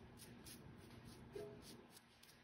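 Near silence, with faint soft strokes of a paintbrush spreading gesso over a carved foam candy shape.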